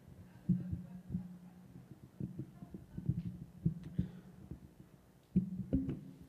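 Irregular low knocks and bumps of equipment being handled and moved on a table, over a low steady hum.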